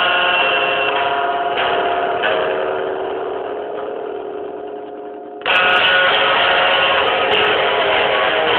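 Guitar chords strummed and left to ring: a new chord about a second and a half in, ringing and fading, then a louder strum about five and a half seconds in.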